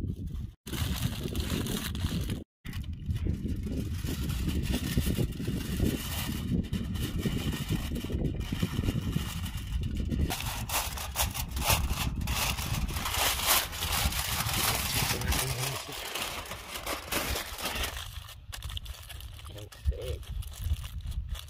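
Aluminium foil crinkling and rustling as a sheet is torn from the roll and folded and pressed around food, a rapid run of small crackles over a steady low rumble.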